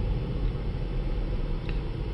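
Steady low rumble of road and tyre noise heard inside the cabin of a moving 2018 Toyota RAV4 Hybrid, with a faint click near the end.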